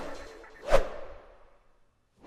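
A single whoosh transition sound effect that swells and fades quickly a little before the middle, leaving a trailing echo that dies away.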